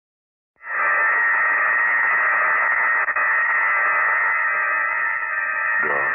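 Opening of an old-time radio drama recording: about half a second in, a loud sustained chord of many held tones begins over steady hiss, with the narrow, muffled sound of an old broadcast transcription. Near the end a new lower note enters underneath.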